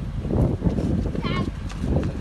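Children's voices while they play, with one short, high-pitched cry a little past halfway.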